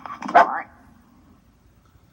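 A cartoon dog's short bark, a yelp with a rising pitch just under half a second in, played through a television speaker.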